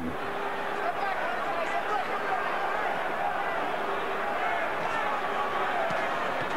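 Boxing arena crowd: a steady murmur of many voices with no cheering peaks.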